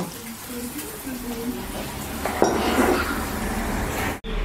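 Kitchen clatter of dishes and utensils: a sharp clink about two and a half seconds in, followed by a brief rush of noise.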